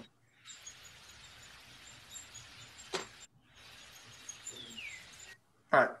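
Downy woodpecker recording playing faintly over a shared computer feed: a hissy background that cuts out briefly now and then, faint high bird notes, a single sharp tick about three seconds in, and a short falling call a little before the end.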